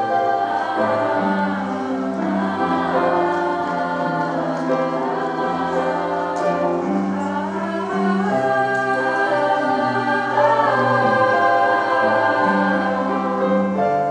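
Treble choir of young women's voices singing together, holding long notes and moving from note to note through a phrase.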